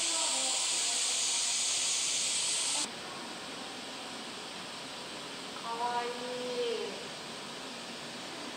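A steady high hiss of outdoor ambience cuts off suddenly about three seconds in, leaving a quieter room tone with faint voices a couple of seconds later.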